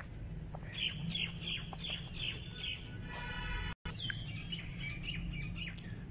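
Birds calling: a run of short chirps, about three a second, then a longer call with a clear pitch. The sound cuts out for an instant, and one more call follows.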